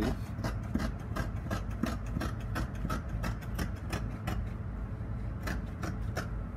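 Scissors snipping through folded fabric, cutting a sleeve curve in short strokes about three a second, over a steady low hum.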